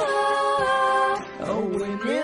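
Pop song with a female singer holding a wordless 'ah' note for about a second, then, after a brief break, sliding down in pitch near the end.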